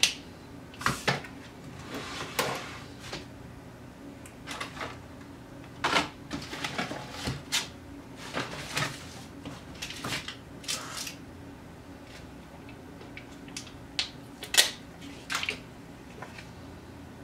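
Paper card and plastic album page being handled on a desk: a scattered series of short clicks, taps and rustles, with the sharpest one near the end.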